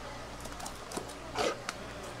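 A whole stingray being handled on a cutting board by gloved hands: a few short wet handling sounds, the loudest about one and a half seconds in, over a steady low hum.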